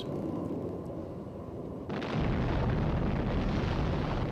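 Atomic bomb test blast: a low rumble, then about two seconds in a sudden, louder rushing noise that carries on, the blast wave arriving after the flash.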